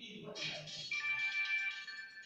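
A short electronic melody of clear, high held notes, the longest starting about a second in and holding for about a second, with faint speech underneath.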